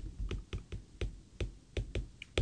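A stylus tapping and clicking on a tablet screen during handwriting: short, sharp, uneven taps, about four a second.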